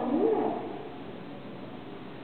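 A woman's voice in the first half-second: one short drawn-out syllable that rises and falls in pitch, then a pause in her speech with only faint hall room tone.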